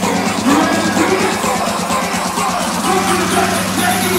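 Loud electronic dance music from a DJ set played over a festival sound system, with a steady beat, held bass tones and a melodic lead line.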